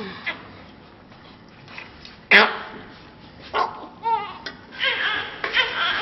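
Newborn baby crying in short, high, wavering cries: a loud cry a little over two seconds in, then more cries toward the end.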